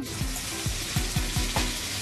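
Large meatballs sizzling steadily as they fry in a frying pan, under background music.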